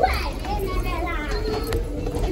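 Children's voices calling and chattering, with a high rising call at the start, as a class of children walks down a stairwell, their footsteps sounding on the stairs.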